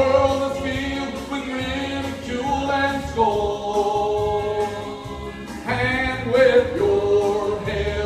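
A man sings a gospel song through a microphone, holding long notes over backing music.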